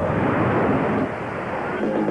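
A loud, dense rushing noise with no clear pitch, with music starting just at the end.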